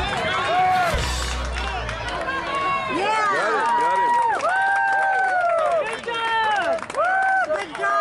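Crowd of spectators and players at a youth baseball game shouting and cheering over one another, many voices in long rising-and-falling yells. The reaction follows a play at home plate called out.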